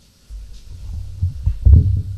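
Microphone handling noise: a low rumble with several dull thumps, the loudest near the end.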